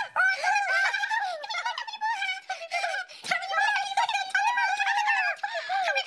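High-pitched cartoon-character voices of the Tombliboos babbling and chattering quickly, their pitch sliding up and down.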